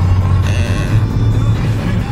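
Music playing on a car stereo inside a moving car, over the steady low rumble of the engine and road.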